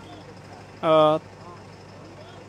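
One short spoken syllable about a second in, over a steady low vehicle hum.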